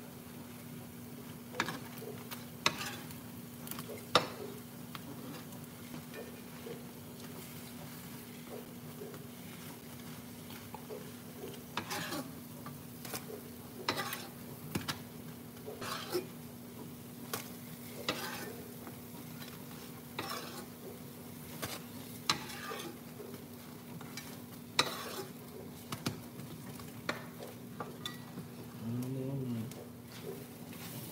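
Pancakes sizzling in nonstick skillets, with metal spatulas scraping and tapping against the pans every second or two. A steady low hum runs underneath.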